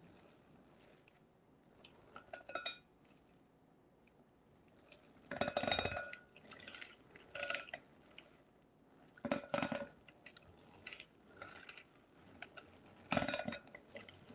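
Hand-cranked rotary egg beater mixing batter in a glass bowl, its metal blades clinking and scraping against the glass in short bursts, about six times.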